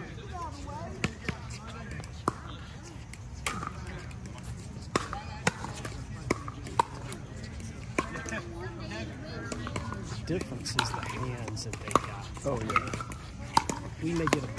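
Pickleball paddles striking the plastic ball: sharp single pops at irregular intervals, about a dozen in all, with more of them near the end as a rally gets going.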